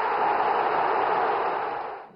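Stadium crowd cheering a goal, a steady wall of noise from thousands of fans that fades away near the end.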